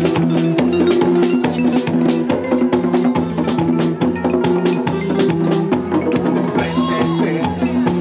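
Live cumbia band playing an instrumental passage: a repeating bass line under busy drums and hand percussion.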